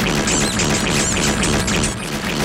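Cartoon sound effects of a toy-factory gloop machine running too fast: a dense, rapid run of repeated sounds as gloop and rubber ducks pour out, with a couple of short rising squeaks about half a second in.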